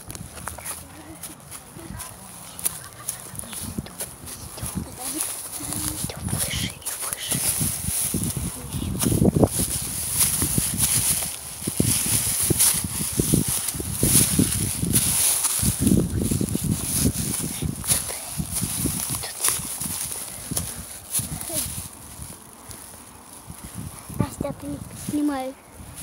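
Footsteps and rustling through dry grass and dead stalks, uneven, getting louder from about eight seconds in.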